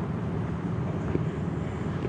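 Steady low rumble of outdoor background noise, with no distinct sounds standing out.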